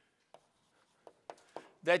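A pause in a quiet room broken by four short, faint clicks, then a man's voice starts speaking just before the end.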